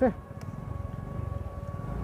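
A small petrol engine running at low speed, a fast even low pulsing that slowly grows louder, as a scooter starts pushing a stalled motorcycle for a bump start. A faint steady whine sits underneath.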